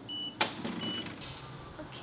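A café point-of-sale register beeping twice with short, high beeps as the cashier rings up the order, with a single sharp click between the beeps.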